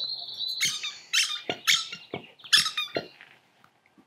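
A bird squawking, very loud: a short whistled note, then a run of harsh, high-pitched calls about half a second apart that die away near the end.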